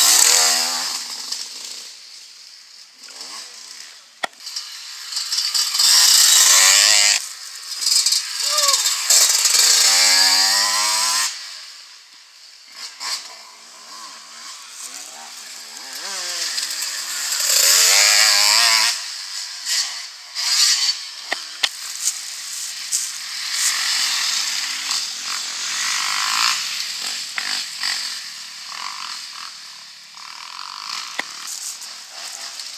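Several dirt-bike engines revving as riders pass one after another, each swelling in loudness and climbing and dropping in pitch with the throttle, then fading as the next one comes through.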